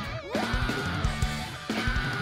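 Live rock band playing: electric guitar over drums. The drums drop out briefly near the start and come back in about half a second in.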